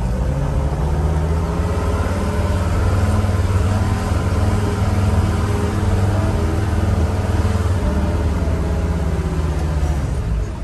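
A 1979 Mercedes 307D's four-cylinder diesel engine running steadily, heard loud from inside the cab as the van is driven slowly.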